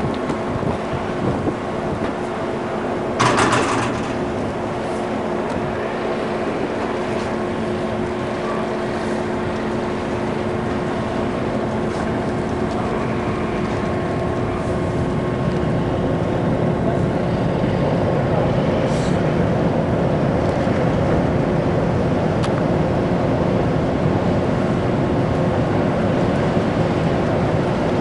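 Steady hum of ship's machinery and ventilation heard on an open deck: a continuous rumble with several constant tones, growing a little louder in the second half. About three seconds in, a brief loud burst of noise cuts across it.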